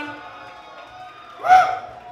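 A live rock song has just ended: faint steady tones linger from the amplified instruments over low crowd noise. About one and a half seconds in, a short, loud whoop rises sharply in pitch.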